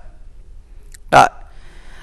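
Speech only: a man says one short word ("rồi") about a second in; the rest is quiet room tone.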